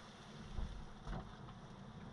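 Wind and rushing water on the deck of a racing yacht sailing in heavy weather. The sound is a low, steady noise with two brief swells about half a second and a second in.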